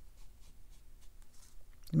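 Faint, soft strokes of a synthetic round watercolour brush laying wet paint onto cold-press cotton paper. A voice begins right at the end.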